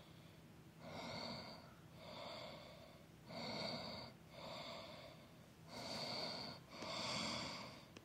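A person breathing heavily close to the microphone: a steady in-and-out rhythm of about one breath sound a second, some three full breaths in all.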